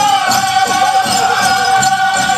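Powwow drum group singing a held, high-pitched song over a steady drumbeat, with the jingling of dancers' bells.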